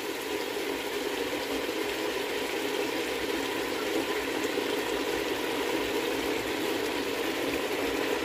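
Chicken pieces frying in a stainless steel pot with pomegranate molasses just poured over them, giving a steady sizzle and bubble.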